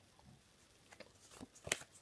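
Pokémon trading cards handled by hand, moved from the front of the stack to the back: a few faint clicks and flicks of card stock, with the sharpest tick just before the end.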